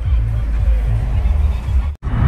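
Music playing on the car's FM radio inside the cabin, heard mostly as a bass line of changing low notes. It cuts off abruptly at the end.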